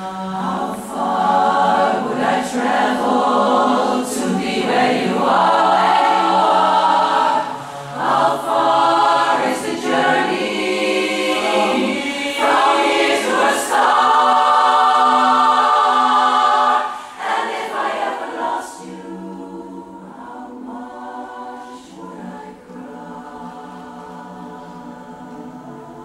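Women's barbershop chorus singing a cappella in close harmony, full and loud at first, then dropping to a soft passage about two-thirds of the way through.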